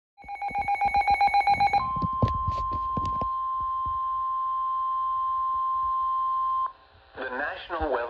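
Midland NOAA weather radio sounding an alert: rapid pulsing beeps for about a second and a half, a few clicks, then the steady NOAA Weather Radio warning alarm tone held for about five seconds before it cuts off sharply. A synthesized voice begins reading the warning just before the end.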